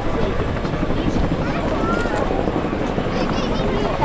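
Military helicopter rotors beating steadily overhead, with spectators' voices over them.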